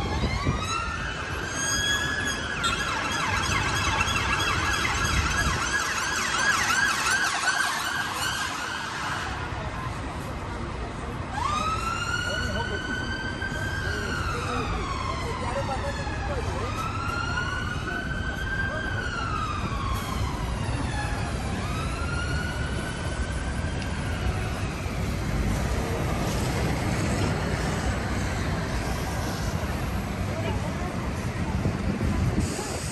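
An emergency vehicle's siren passing along a city street, heard over steady traffic rumble. A wail gives way about two seconds in to a fast yelp lasting several seconds. Slow rising-and-falling wails then return and fade out after about twenty seconds.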